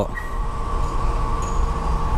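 A petrol dispenser pumping fuel through the nozzle into a motorcycle tank: a steady mechanical hum with low rumble and a thin, constant high whine.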